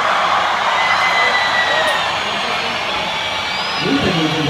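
Large concert crowd cheering and shouting in a dense wash of voices, with a whistle or two gliding over it. A single voice rises over the crowd near the end.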